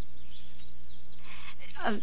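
A pause with a steady low electrical hum and faint hiss from an old tape recording, plus faint scattered high chirps. A woman's voice starts with "uh" near the end.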